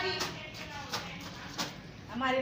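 Wet clothes being scrubbed by hand against a hard floor: a few short, irregular scrubbing strokes.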